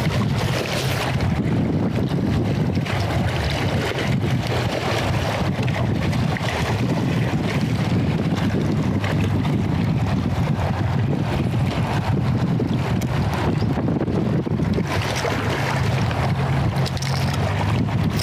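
Strong wind buffeting the microphone, a steady low rumbling noise throughout.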